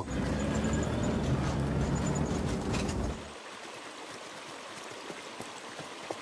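Military truck engine running with a heavy low rumble. It cuts off abruptly about three seconds in, leaving a quieter, steady rushing noise.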